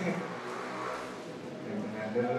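A man speaking into a handheld microphone, his voice amplified in the room, with a stretch of rushing noise under it in the first half.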